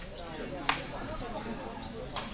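A sepak takraw ball struck once by a player, a single sharp crack about two-thirds of a second in, over crowd murmur.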